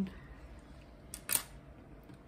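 A single short click about a second and a half in, from a paintbrush being handled among the others on the work table, over quiet room tone.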